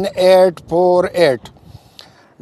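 A man speaking Pashto, reading out digits of a phone number, then a pause of about half a second near the end.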